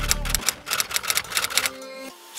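A rapid, uneven run of typewriter-style key clicks, about a dozen in under two seconds: a typing sound effect laid under a title card. The clicks stop shortly before the end, over faint background music.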